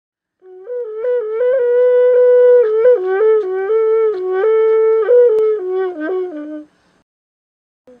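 Karhanol, a long bamboo wind instrument, played as a melody of held notes stepping up and down. It stops about a second before the end.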